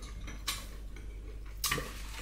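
Metal fork clicking against a plate: two light clicks about a second apart.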